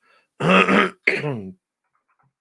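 A man clearing his throat loudly in two short rasps, about half a second and a second in.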